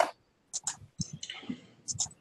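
A few short, sharp clicks, with a faint, indistinct voice between them.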